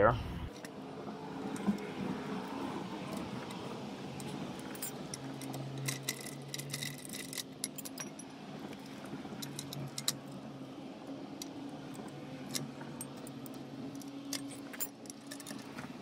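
Scattered light metallic clinks and taps, with a denser run of them about six to seven seconds in. They come from pliers and the steel handle working against the Torin Big Red trolley jack's handle socket as the socket is bent and the handle fitted. A steady low hum runs underneath.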